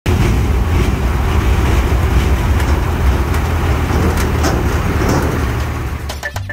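Large lorry's diesel engine running steadily and loud, close by, with no revving.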